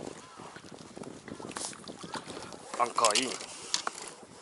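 Rope and gear being handled against the side of an inflatable boat, with scattered knocks and rustles over wind and water noise. A short wordless vocal sound comes about three seconds in.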